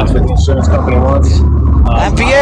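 Talking voices heard through a phone-call audio mix, over a loud low rumble that sets in about half a second in.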